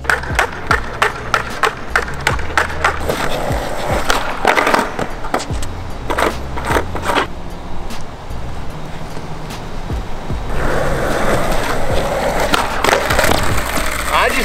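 Skateboard on a hard court: the board clacks and knocks repeatedly from pops and landings, and the wheels roll with a steady rumble from about ten seconds in, over background music with a bass line.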